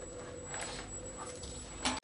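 Handling noise of a quadcopter being picked up off a workbench: light rustling and small knocks, with one louder knock just before the end.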